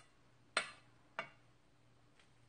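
Two short clinks on a metal bowl, about two-thirds of a second apart, as citrus fruit is handled in it.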